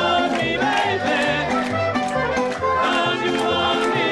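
Mariachi band playing an upbeat song on guitars and accordion, with a bass line bouncing between notes about twice a second and voices singing over it.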